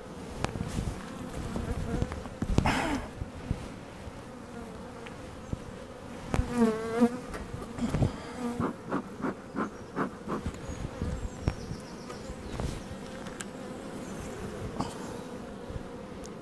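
Honey bees buzzing around an opened hive: a steady hum, with single bees flying close past and their pitch wavering, and scattered knocks and rustles in between. The colony is agitated and defensive, attacking the beekeeper.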